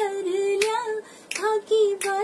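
A woman singing a Rajasthani folk song unaccompanied, holding long wavering notes, with a short pause about a second in.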